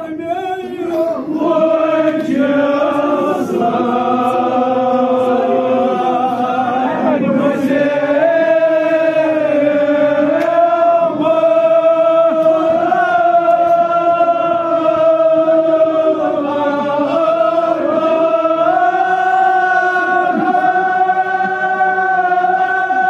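Male voices chanting a Kashmiri marsiya, a Shia elegy for Muharram, in long held notes that step up and down in pitch. The chant picks up about a second in and carries on steadily.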